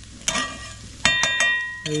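Metal spatula scraping and knocking against a cast-iron skillet as scrambled eggs are stirred, each stroke leaving a short metallic ring: one stroke early, then three quick knocks about a second in. Faint sizzling of eggs frying in bacon fat underneath.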